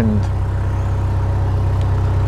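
Narrowboat engine running steadily under way, a low even thrum with a fast regular beat.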